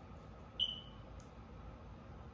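Quiet room tone broken by one brief high-pitched chirp about half a second in, trailing off quickly, followed by a faint click.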